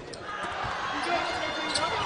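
Basketball bouncing on a hardwood court a few times, over the steady murmur of an arena crowd.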